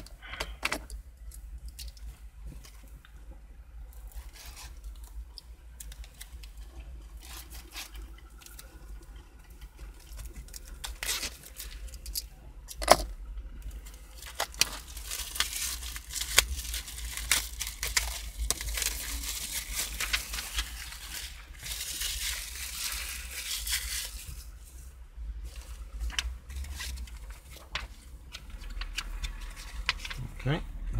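Clear plastic wrapping being torn open and crinkled off a flat-pack wooden model kit, with scattered clicks and rustles of card and paper. The crinkling grows loud and dense in the middle of the stretch and lasts about ten seconds, then thins out again.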